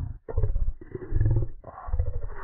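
The 'Oh yummy! Milk and cookies!' voice clip run through heavy audio effects, pitched far down and distorted into three deep, muffled bursts with brief gaps between them.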